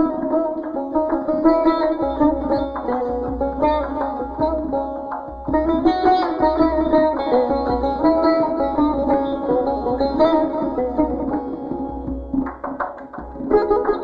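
Persian tar plucked in quick runs and tremolo in the Afshari mode, with tonbak goblet-drum accompaniment.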